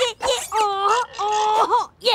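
A cartoon pony's high female voice vocalising in short, pitched, moaning phrases, with a few briefly held notes and short gaps between them.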